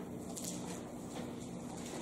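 Soft rustle of thin Bible pages being turned while a passage is looked up, over a steady low room hum.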